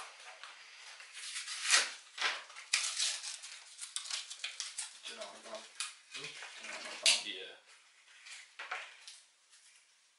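Handling noise from small plastic dial gauges and their packaging: irregular rustling, crinkling and light clicks, with two sharp loud clicks, one a little under two seconds in and one about seven seconds in.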